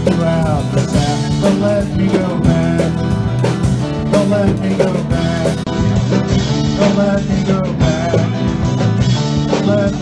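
Solo live performance: an acoustic guitar strummed in a steady rhythm, with a man singing into a microphone.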